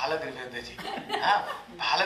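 A man talking with chuckling laughter in his voice.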